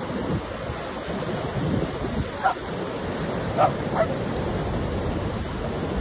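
Ocean surf washing steadily, with a dog giving three short barks: one about two and a half seconds in and two close together a second later.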